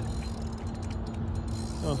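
Fishing reel being cranked to bring in a hooked stingray: a run of fast ratchet-like clicks that stops about three quarters of the way through, over a steady low hum.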